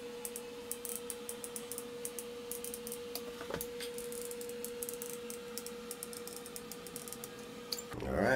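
Caulking gun laying a bead of silicone: a steady faint tone runs throughout with scattered light clicks, and the tone cuts off suddenly at the end.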